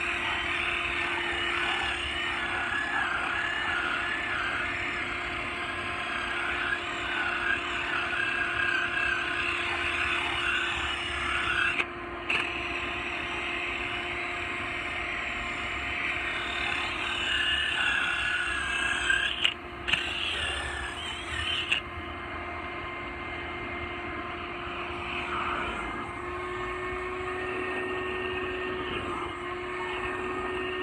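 Shop-vac-powered carpet extractor motor running steadily with a constant hum, its pitch rising slightly a few seconds before the end as the extraction wand works the couch fabric.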